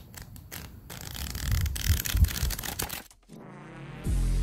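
Pages of a paperback book being flipped: a few single page flicks, then a rapid riffle of pages rustling and slapping for about two seconds. A faint rising tone starts in the last second.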